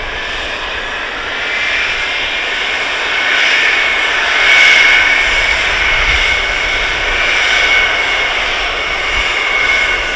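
KC-135R Stratotanker's four CFM56 turbofan engines running as the tanker taxis slowly: a steady jet whine with a high tone over the engine noise, growing somewhat louder around the middle.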